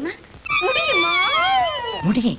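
A drawn-out, high whining vocal sound about a second and a half long, wavering and then falling in pitch.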